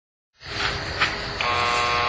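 Door intercom buzzer pressed, giving a steady buzz that starts about a second and a half in, over a low background hum.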